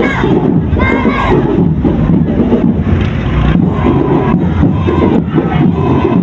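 Parade crowd shouting and cheering in a loud, dense din. High-pitched shouts rise out of it right at the start and again about a second in, with scattered sharp knocks throughout.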